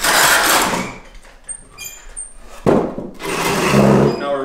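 A wooden 2x4 workbench frame being flipped over onto its legs: wood scraping and knocking against the floor in two loud bursts, one at the start and a sharper one about three seconds in.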